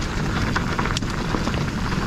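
Specialized Stumpjumper Evo Alloy mountain bike rolling down a loose dirt singletrack: the tyres crackle over dirt and small rocks, with wind noise on the microphone and one sharper click about a second in.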